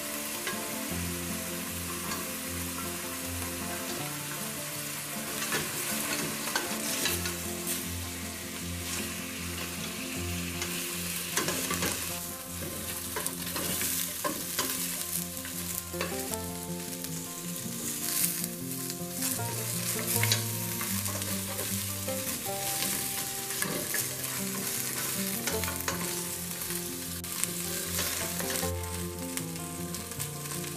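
Lamb pieces and small whole onions sizzling as they brown in hot oil in a stainless steel pot, with a spoon stirring them and knocking and scraping against the pot.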